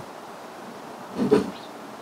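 Mostly speech: one short spoken word about a second in, over a low steady background hiss.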